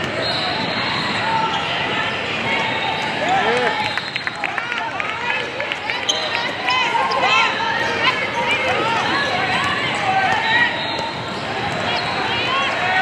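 Basketball being dribbled on an indoor court, with sneakers squeaking in short chirps as players run, over background chatter of players and spectators. A quick run of ball bounces comes about four seconds in.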